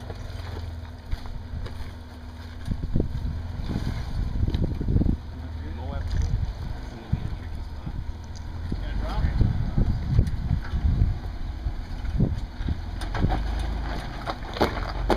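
Toyota Tacoma pickup's engine running at low revs, a steady low rumble that swells as the truck crawls up onto a boulder.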